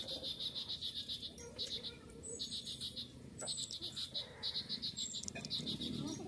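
Insect chirping: a high, fast pulsed trill repeated in short bursts, with a few brief higher chirps in between.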